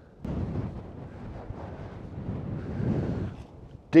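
Strong gale wind buffeting the microphone: a gusting low rumble that swells near the end and then drops away.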